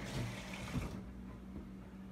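Brief running water from a kitchen tap that stops about a second in, over a steady low hum.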